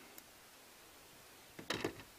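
Quiet room tone broken by one faint, crisp snip about a fifth of a second in: small scissors trimming the tag end of a freshly tied clinch knot in 50-pound monofilament leader. A brief vocal sound from the man follows near the end.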